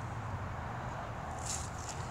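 Quiet outdoor background: a steady low rumble, with a brief faint rustle about one and a half seconds in.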